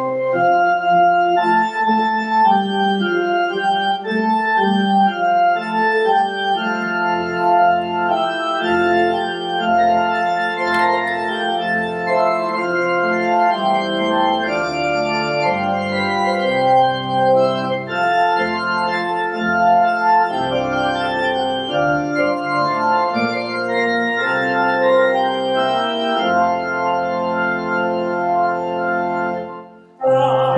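Church pipe organ playing sustained chords as the introduction to a congregational hymn, with deep pedal bass notes joining a few seconds in; it stops just before the end.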